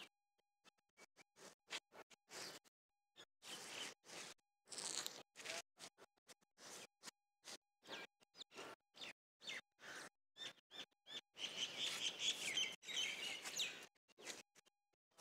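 Birds chirping outdoors, mixed with rustling wind and handling noise on a phone microphone; the sound cuts in and out in short choppy bursts, busiest near the end.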